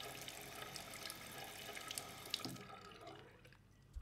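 Bathroom sink tap running, faint, then shut off about two and a half seconds in, the sound trailing away over the next second.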